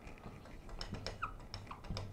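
Dry-erase marker writing on a whiteboard: faint taps and short squeaks of the felt tip on the board as a number is written.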